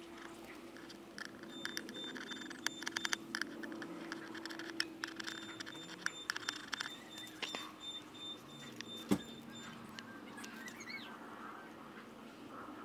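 Faint scattered clicks and light rustling as small vinyl letter decals are picked off their backing sheet with tweezers and pressed onto a textured plastic glovebox lid, with one sharper tap about nine seconds in.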